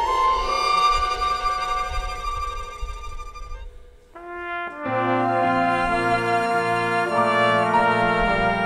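Live orchestra playing: a held chord fades away about four seconds in, then the orchestra comes back in with a fuller run of sustained chords.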